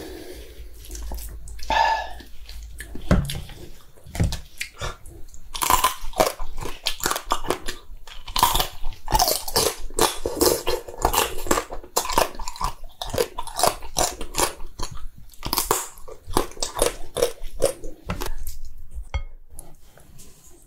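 Close-miked chewing and crunching of soy-sauce-marinated raw crab (ganjang gejang), the shell bitten along with the meat. Rapid wet clicks and cracks come sparsely at first and almost without pause from about five seconds in.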